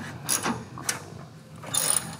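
A few sharp metal clicks and a short scrape near the end from steel hitch hardware being handled at a receiver hitch as the hitch pin is finished tightening.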